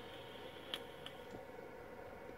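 Faint hiss of air being drawn through a vape as a hit is taken, fading out about a second in, with a couple of small clicks.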